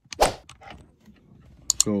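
Handling noise as a lavalier microphone's adapter plug is pushed into the iPhone that is recording: one loud rub-and-thump about a quarter second in, a few light clicks, and two sharp clicks near the end.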